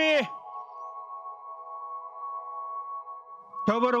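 Background score: a sustained held chord of several steady tones, unchanging throughout, with a brief voice at the start and another just before the end.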